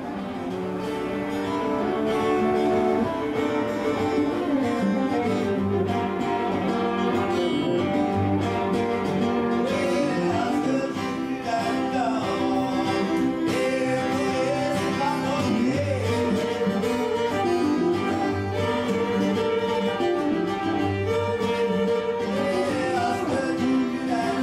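Fiddle and acoustic guitar playing a tune together, fading in over the first couple of seconds, with the fiddle sliding between sustained notes.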